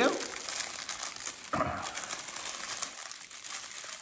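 Thin clear plastic bag around a small tripod crinkling as it is handled in the hands, an uneven crackle with a louder rustle about one and a half seconds in.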